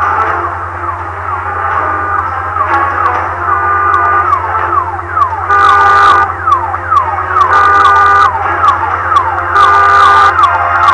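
Car alarm sounding, cycling between steady stacked tones and repeated falling whoops, over a steady low hum. There are a few brief sharp noises about six seconds in and again near the end.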